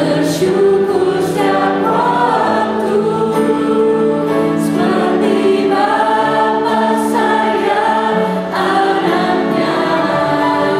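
A small worship team of voices singing a hymn in Indonesian together, with piano accompaniment.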